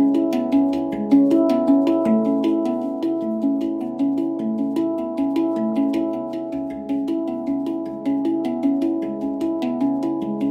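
Handpan played with the fingers: a quick, even run of ringing steel notes, about four or five strikes a second, each note still ringing as the next is struck.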